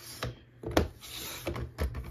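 Creative Memories paper trimmer's blade housing sliding along its rail and slicing through a sheet of paper, with a few light knocks of plastic on the rail. The cut goes smoothly, "like butter".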